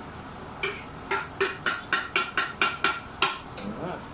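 A metal spoon tapping against a plate about ten times, roughly four taps a second, each tap ringing briefly, as chopped chillies are knocked off the plate into the pan.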